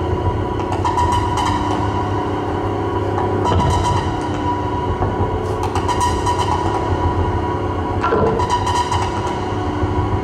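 Doepfer A-100 eurorack modular synthesizer playing a dense, rumbling drone texture: a low hum and a held higher tone under hissy noise swells that come in every two to three seconds.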